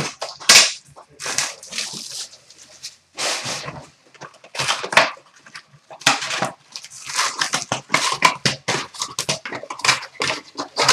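A hobby box of trading cards being opened: cardboard and wrapper rips, then foil card packs crinkling and rustling as they are pulled out and laid on a glass counter. The noise comes as short, sharp bursts, thicker in the second half.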